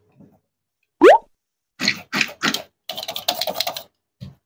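A short rising whistle-like glide about a second in. It is followed by rustling, knocking and a dense run of rapid clicks as a plastic toy strawberry and a squishy stress-ball strawberry are picked up and handled.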